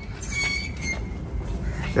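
Glass entrance door being pushed open, giving a steady high-pitched squeal that starts just after the push.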